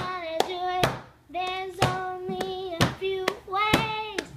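A song: a high voice singing long held notes, with sharp handclaps on the beat about twice a second.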